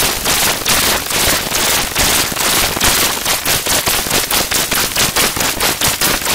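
Very loud, heavily distorted digital noise from a video-editor audio effect: a dense crackling hiss that pulses several times a second.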